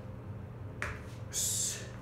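Feet landing with a sharp slap on a wooden floor, followed about half a second later by a short, forceful hissing exhale through the teeth, louder than the landing.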